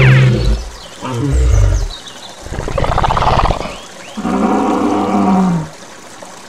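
Animal roars from a sound effect, four in a row, each about a second long with short gaps between, the last a low growl that drops in pitch as it ends.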